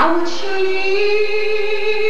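A woman singing solo into a microphone through a church PA, holding one long steady note that begins just after the start.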